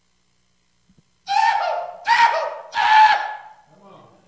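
A man's loud, high-pitched war whoop through the microphone: three whooping yells in quick succession, starting about a second in.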